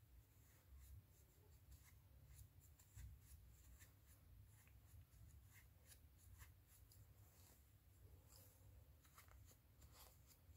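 Near silence with faint, scratchy rustling as polyester fibrefill stuffing is pushed into a small crocheted amigurumi body with the back of a crochet hook and fingers.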